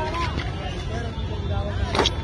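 Voices talking in the background over a steady low rumble, with a light clack of wooden dandiya sticks near the end.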